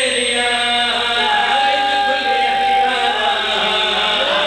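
A man's voice chanting verses in a melodic, sung style into a microphone, holding one long steady note through the middle.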